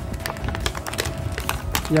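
Clear plastic blister packaging crackling and clicking in a quick irregular run as hands flex and pry it to free a die-cast model plane stuck inside.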